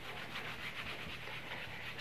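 Whiteboard eraser rubbing over a whiteboard in quick back-and-forth strokes, wiping off marker ink.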